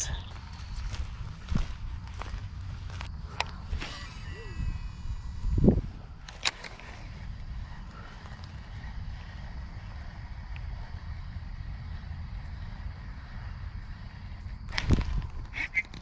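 Handling noise from a baitcasting rod, reel and lure as the line is worked by hand. Scattered sharp clicks come in the first few seconds, with a knock near the middle and another near the end, over a low steady rumble.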